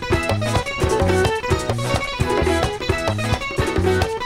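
Latin dance band playing an instrumental passage: acoustic guitar picking a melody over a repeating bass line and percussion that keep a steady beat.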